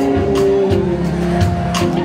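Rock band playing live through a PA: drum kit hits, electric bass and guitars, with a long held note sliding down in pitch in the first half.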